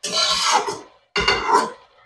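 Slotted spatula scraping across a wok as vegetables are stir-fried, two scraping strokes about a second apart.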